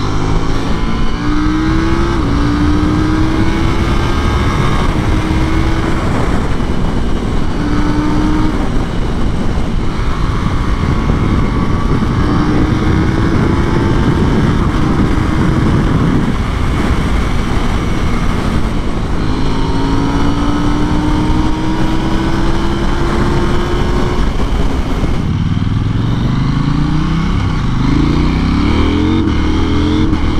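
KTM 890 Duke R's parallel-twin engine held under heavy throttle at high speed, its note climbing slowly for long stretches under loud wind rush. Near the end the revs rise in several short, quick sweeps, shift after shift.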